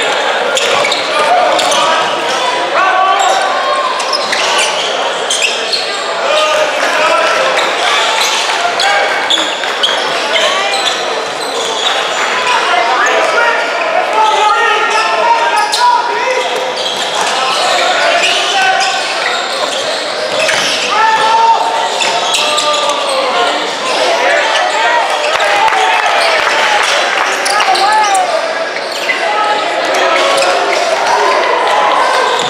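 Basketball game in a gym: the ball bouncing on the hardwood court, with many overlapping voices of players and spectators calling out. The sound echoes through the large hall.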